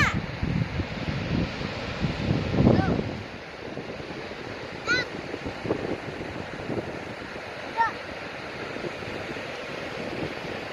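Wind buffeting the microphone for the first few seconds, over the steady wash of surf on the beach. A few brief high-pitched calls sound in the background, about halfway through and again near the end.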